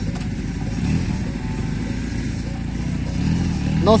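Dinamo Super Sport motorcycle engine idling steadily, with a slight rise in revs near the end.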